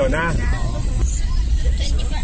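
Steady low rumble of road and engine noise inside a moving vehicle. A voice is heard briefly over it in the first half-second.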